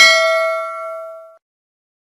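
Notification-bell sound effect: a single bell ding with several ringing tones, fading out about a second and a half in.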